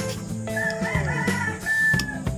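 A rooster crowing once, starting about half a second in and lasting about a second and a half, over background music.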